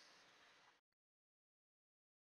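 Near silence: faint room tone for the first part, then dead digital silence.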